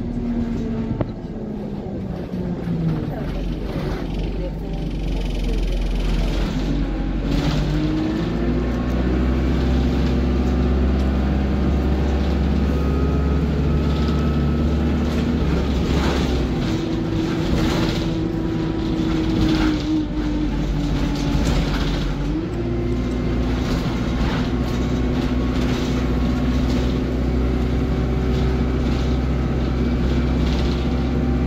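Diesel engine and automatic gearbox of a single-deck bus heard from inside the passenger saloon. The pitch falls as the bus slows at the start, then climbs in steps as it pulls away and runs steadily. A little past the middle it dips and rises again.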